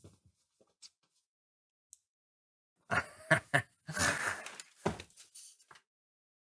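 Near silence for about three seconds, then a man laughing in a run of short, uneven bursts that stops just before the end.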